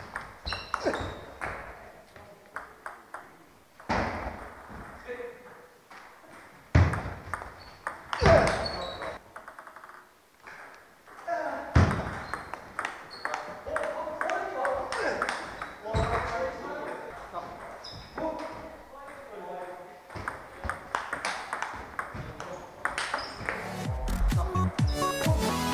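Table tennis rallies: the ball clicks back and forth off rackets and table, with several sharply louder hits from hard drives. Voices can be heard between points.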